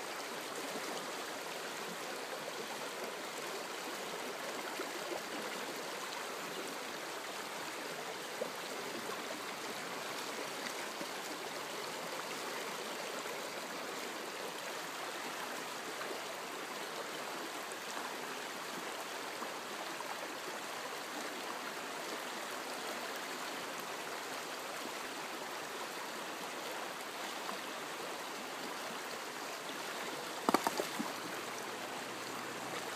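Shallow river running over stones and around a boulder, a steady rush of riffling water, with a couple of faint knocks about five and eight seconds in.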